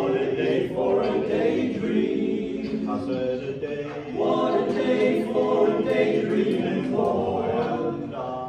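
Five-man male a cappella group singing in close harmony, holding sustained chords in phrases with brief breaks between them.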